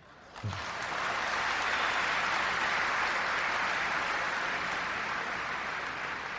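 Large hall audience applauding. It starts about half a second in, holds steady and eases off slightly near the end.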